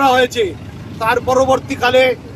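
A man speaking in short phrases, pausing briefly about half a second in.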